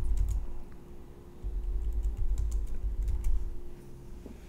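Computer keyboard typing: a scattering of key clicks while code is edited, over an uneven low rumble.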